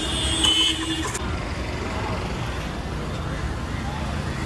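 City street traffic: a steady rumble of passing cars and scooters, with a brief higher-pitched sound in the first second.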